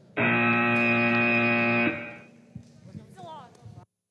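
VEX Robotics competition match-end buzzer: one steady, buzzy horn tone that starts just after the countdown, lasts nearly two seconds and cuts off sharply, signalling that the match is over.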